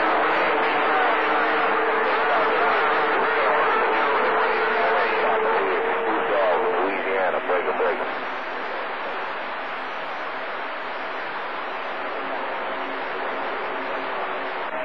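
CB radio receiving skip on channel 28: a steady rush of static with faint, garbled voices buried under it. A steady whistling tone sits in the noise for the first six seconds or so, and the noise drops slightly after about eight seconds.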